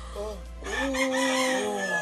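A rooster crowing once: a short opening note, then a long held call of over a second that ends near the close.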